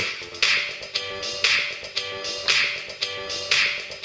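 A music track in the djay iPad app jumping back to a set cue point again and again, so the same short snippet restarts about once a second. It stutters like a skipping record, the sound a scratch on a vinyl record would normally cause.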